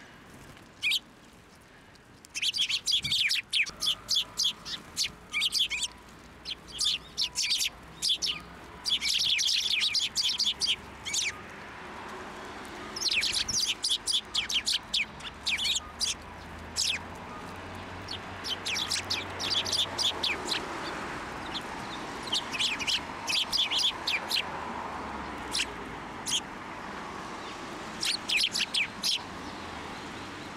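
Eurasian tree sparrows chirping in quick, high runs, coming in several loud flurries with short gaps between them.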